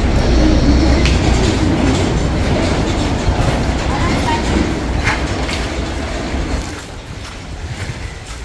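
Wind buffeting the microphone: a loud, steady low rumble with a hiss over it, dying down about seven seconds in, with faint voices behind it.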